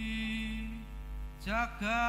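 A man singing an unaccompanied Javanese vocal line into a microphone: one long held note that fades out before the middle, then a new phrase beginning with an upward slide near the end, over a steady low electrical hum.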